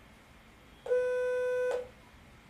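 Computer alert beep from a Python script's winsound.Beep call, set to 500 Hz for 1000 ms: a single steady beep starting about a second in and lasting just under a second. It is the stock-signal scanner's alert that a new trading signal has been found.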